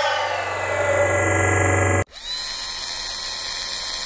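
Electronic motion-graphics sound effects. A whooshing sweep of falling tones over a steady low hum cuts off suddenly about two seconds in. A second synthetic whine then rises briefly and holds steady.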